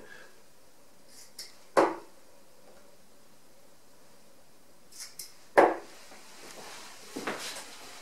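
Two steel-tip tungsten darts (Harrows Elite, 23 g) thudding into a bristle dartboard, one strike about two seconds in and another about four seconds later. Fainter clicks and rustles come between the strikes.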